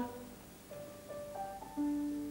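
Soft keyboard music: a few held notes climbing in pitch, then a louder, lower note held near the end.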